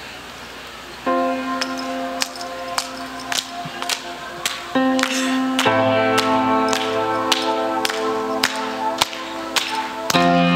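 Worship band starting a song: sustained chords with a sharp tick about every 0.6 seconds, the chord changing near the halfway point and a low bass line coming in just after. Congregation chatter fills the first second before the music begins.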